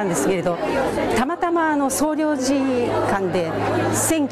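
A woman speaking Japanese close to the microphone, with crowd chatter behind her.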